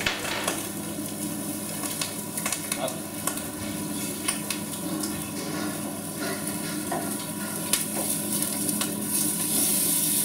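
A piece of raw razor clam searing in oil on a hot flat steel griddle plate: a steady sizzle peppered with small crackles and pops, growing louder near the end as the clam browns.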